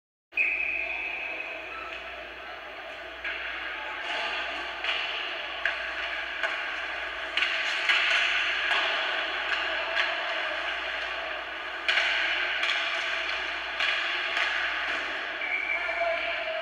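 Live ice hockey game sound echoing in a rink: a steady din of skates on ice and voices, with scattered sharp clacks and knocks from sticks, puck and boards. A short high steady tone sounds near the start and again near the end.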